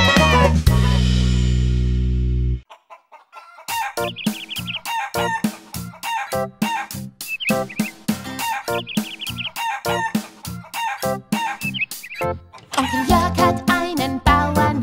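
Chickens clucking in a farmyard for several seconds, in short separate calls with a couple of higher warbling calls among them. Before this, a held music chord ends and there is a brief gap. Near the end, bouncy children's music starts.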